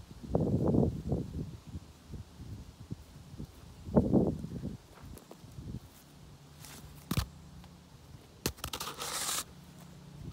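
Footsteps on grass and cloth rustling close to the microphone: low thuds near the start and about four seconds in, then a few short sharp noises and a second-long rustle near the end.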